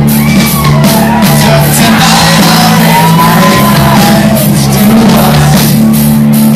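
Punk rock band playing live and loud in a club, drums pounding steadily under bass and guitars, with loud vocals over the top.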